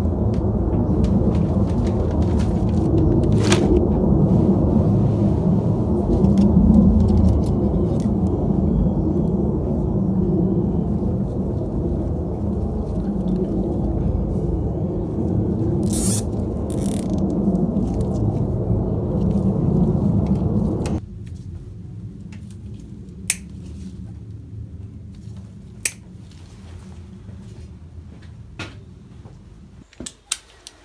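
Loud, steady low rumbling noise that stops abruptly about two-thirds of the way through, leaving a quieter background. A few sharp clicks are heard.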